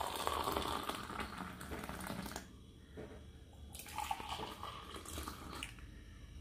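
Hot milk coffee poured in a thin stream from a steel pan into a ceramic mug, a faint splashing trickle. It stops about two and a half seconds in and picks up again, more softly, a second or so later.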